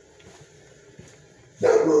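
A dog barking loudly, starting suddenly near the end.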